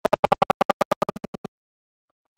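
A short sound fragment repeating rapidly, about ten times a second, in a buzzing stutter like a glitching audio stream, then cutting off suddenly about one and a half seconds in.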